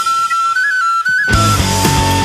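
A lone high woodwind plays a short, stepwise melody of a few held notes in a break in a folk-rock song. After a little over a second the full rock band comes back in.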